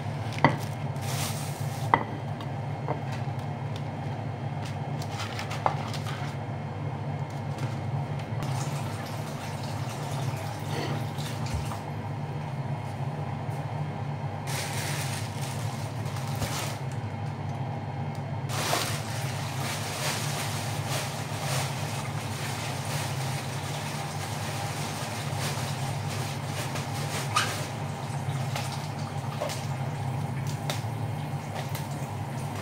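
A steady low hum runs throughout, under intermittent rustling of plastic bags. Two sharp knocks come within the first two seconds, a plate being set down on the counter.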